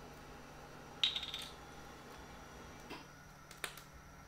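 Handling of a plastic cooking-oil bottle: a sharp plastic crackle about a second in, then a few faint clicks.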